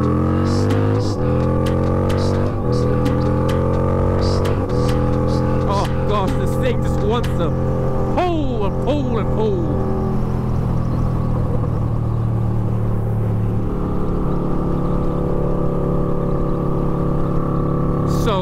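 Harley-Davidson V-Rod's liquid-cooled V-twin engine accelerating hard, its pitch climbing and dropping back three times as it shifts up through the gears in the first few seconds, then running at steady cruising revs.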